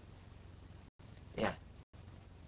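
Low, steady hiss of room tone with one short spoken 'yeah' about one and a half seconds in; the sound cuts out briefly twice.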